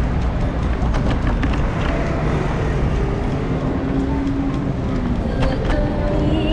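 Steady rumble of city street traffic, with scattered light clicks and a brief humming tone around the middle.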